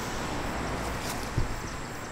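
Wind on the camera microphone outdoors: a steady rushing hiss with a low rumble, and a brief soft thump about one and a half seconds in.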